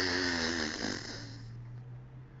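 A man's long, held, wordless vocal sound, a drawn-out "ooh", fading out about a second in, over a low steady hum.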